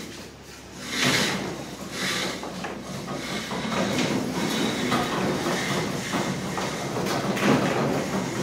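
A black plastic pipe being fed down into a borewell, rubbing and scraping against the opening as it slides in. It makes a continuous rough sliding noise that starts about a second in.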